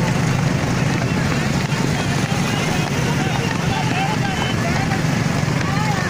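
Motorcycle engine running steadily at road speed with wind on the microphone, and faint shouting voices in the second half.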